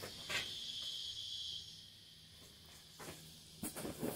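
Faint, steady high-pitched insect chirring that fades out about halfway through, with a few soft handling clicks near the end.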